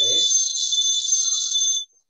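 A shrill, steady high-pitched whistling sound with a hiss, which cuts off suddenly near the end.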